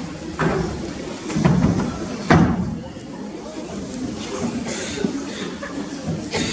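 Indistinct murmur of voices, with a sharp thud a little over two seconds in and a few softer knocks.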